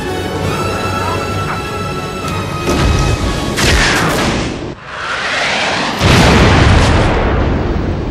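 Film score music over jet aircraft sound effects, with a rushing swell about three and a half seconds in and a heavy boom about six seconds in, the loudest moment.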